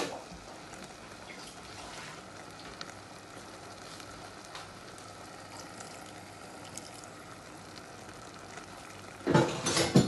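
Minced-meat and vegetable filling sizzling gently in a steel pot on the hob, a steady low crackle. Near the end a louder burst of splashing and sizzling as a little water is poured into the hot pot.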